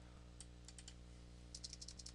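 Faint computer keyboard keystrokes: a few scattered taps, then a quick run of several about three quarters of the way through, over a steady low electrical hum.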